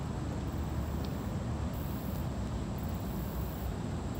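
Steady outdoor background noise: a low, unsteady rumble under a faint hiss, with no distinct sound events.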